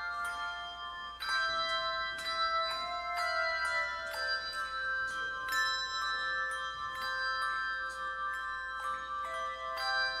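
Handbell choir playing a slow hymn: chords of bells struck every second or so and left to ring over one another.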